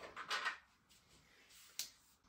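A brief soft rustle of clothing as the body turns, then quiet with a single sharp click near the end.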